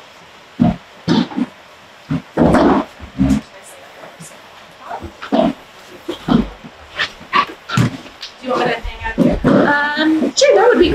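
Chairs being moved and scraped across a wooden floor, with scattered knocks and thuds as seats and tables are rearranged, the busiest stretch a few seconds in. A few murmured words come in near the end.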